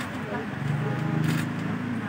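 Indistinct voices of several people talking in the background, with no clear words.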